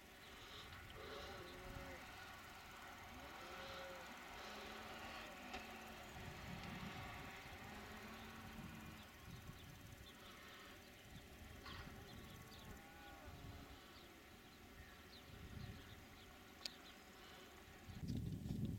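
Faint outdoor ambience with a few distant sheep bleats, mostly in the first half.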